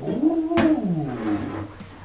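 A long, wavering vocal call that rises and then falls in pitch over about a second and a half, with a sharp click about half a second in.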